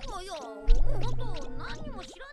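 Anime episode audio: a character's Japanese dialogue over background music, with a sudden loud, low rumbling sound effect about two-thirds of a second in that fades over about a second.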